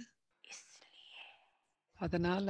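Near silence in a pause of a woman's talk at a microphone, with a faint breathy, whispery sound from about half a second to a second and a half in.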